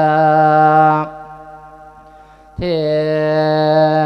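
A Buddhist monk singing a Thai Isan-style lae (chanted sermon) into a microphone: a long held note that ends about a second in, a short pause, then another long held note.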